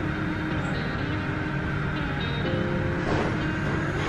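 Background music with a few held notes over a steady low rumble of indoor ambient noise.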